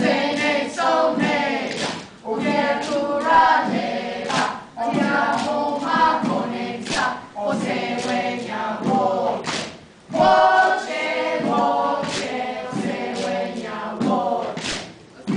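A group of children and adults singing together, with sharp percussive strikes on hand-held gourds.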